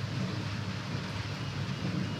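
Steady low background rumble with a faint even hiss, no distinct event: ambient noise from outside the frame.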